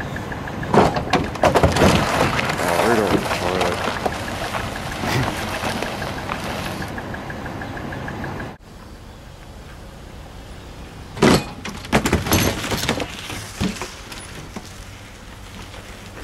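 Car engine revving up and down as a Chevrolet Impala drives up onto a flatbed car trailer, with a quick electronic beeping running alongside. Partway through the sound drops to a quieter steady engine run, broken by a few clunks.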